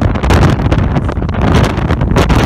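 Loud, gusty wind noise on a phone's microphone on the open deck of a moving cruise ship.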